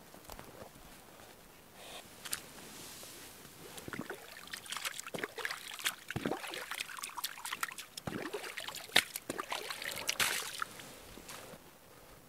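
Lake water splashing and trickling as a wooden mug is dipped and swished in it to rinse it out, a busy run of small splashes from about four seconds in until near the end.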